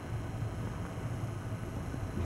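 Wood fire burning in a fireplace: a steady low rumble with a faint even hiss and no distinct crackles.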